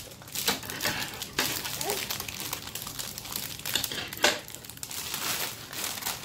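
Thin plastic wrapper crinkling and crackling as it is pulled and worked off a clear plastic toy tube by hand, with a few sharper crackles along the way.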